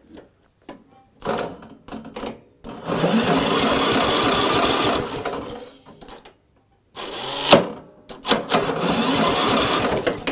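Electric starter motor cranking a Briggs & Stratton Intech 6.5 overhead-valve engine, its pinion gear now meshing with the flywheel, in two runs of a few seconds each after a few short clicks as the solenoid is bridged with a screwdriver. Cranking fine with the solenoid bypassed, which points to the solenoid as probably faulty.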